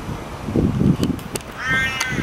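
A crow gives a short, nasal caw near the end, over a low rumbling of wind and handling noise on the microphone.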